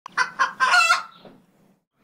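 A rooster crowing once: two short notes, then a longer held one, fading out by about a second and a half in.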